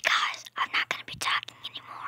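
A person whispering: a run of breathy, unvoiced syllables that trails off just after the end.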